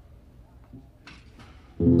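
Faint low noise with a few soft ticks, then a guitar comes in suddenly near the end with a loud plucked chord whose notes ring on.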